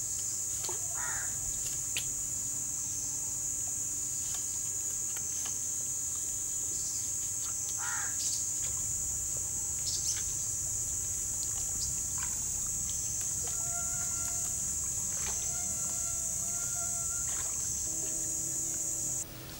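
A steady, high-pitched insect drone, with a few short bird calls and occasional sharp clicks over it.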